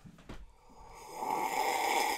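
A person making a drawn-out, snore-like snort through the nose and throat, growing louder for about a second and then cutting off.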